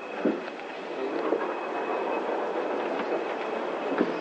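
Schindler traction elevator at its lowest stop: a short thump just after the start, then a steady rumbling hum with scattered light clicks and footsteps as the doors open and passengers step out of the car.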